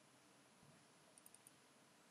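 Near silence: faint room tone with three quick, faint computer-mouse clicks a little over a second in.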